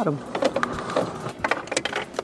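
Rustling, scraping and scattered clicks of a charger cable and its plug being pushed through a plastic fuse-panel opening and handled against the dashboard trim.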